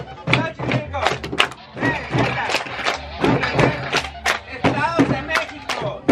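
Hands clapping in a repeated rhythm, with music and voices.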